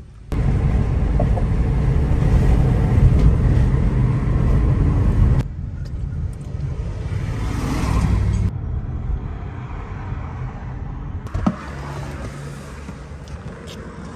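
Car driving, a low rumble of road and engine noise heard from inside the cabin, loudest in the first five seconds and dropping in abrupt steps after that. A sharp click comes about eleven seconds in.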